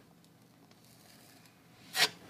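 Near silence: faint room tone, with a brief hiss near the end.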